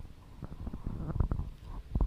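Handheld microphone being handled: a run of irregular low thumps and short rustles close to the mic, growing louder after about a second.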